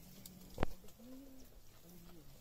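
A dove cooing in low, arched notes, with one sharp click a little over half a second in, the loudest sound.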